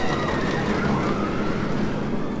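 Manta steel roller coaster train running along its track overhead: a steady rumble with a thin high whine.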